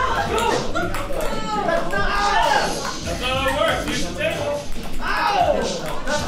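Several people's voices calling out and shouting over each other in a room, with light clicks of ping pong balls bouncing.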